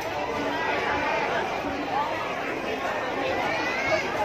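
Crowd chatter: many people talking at once, a steady babble of voices.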